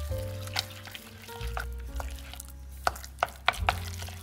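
A wooden spoon stirring and beating thick, egg-enriched choux-style dough in a stainless steel saucepan, giving wet squelches and short knocks against the pan, with a cluster of sharper knocks near the end. Background music with a steady bass plays underneath.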